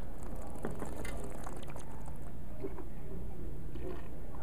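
Faint mouth sounds of wine being sipped and slurped during tasting, then spat into a metal ice bucket used as a spittoon near the end, over a steady low hum.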